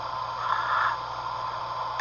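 A pause between voices: steady hiss and hum of a played-back recording, with a faint brief sound about half a second in.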